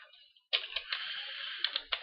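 Computer keyboard keys clicking as code is typed: a few keystrokes, then a quicker run of typing through most of the remaining time.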